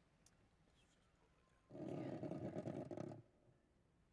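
Handling noise from the podium microphone being moved and lowered: a low rumble lasting about a second and a half, starting about two seconds in and stopping abruptly.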